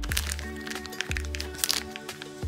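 Clear plastic zip-top storage bag crinkling and crackling in irregular bursts as it is squeezed and kneaded by hand, with miso paste and a boiled egg inside. Background music with sustained tones plays under it.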